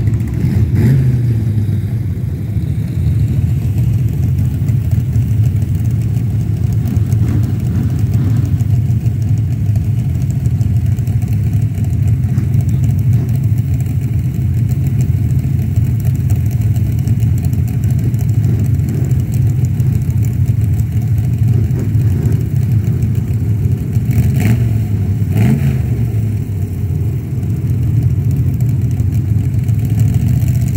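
Dirt-track stock cars racing, their engines running loud and steady under throttle as the pack circles the track. Single cars pass close, one right at the start and two in quick succession near the end, each rising and falling in pitch as it goes by.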